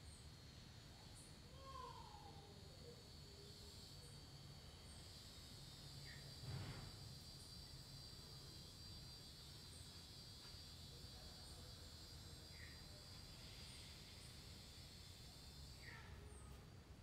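Faint outdoor garden ambience: a steady high insect drone, like crickets, with scattered short bird chirps, including one falling call about two seconds in. A brief soft rustle or breath is heard about six and a half seconds in.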